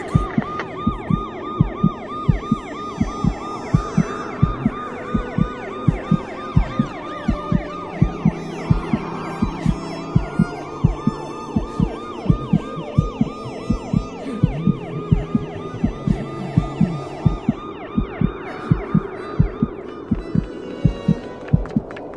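An emergency-vehicle siren sounding in a fast yelp, its pitch rising and falling several times a second, laid over music with a steady, heavy beat.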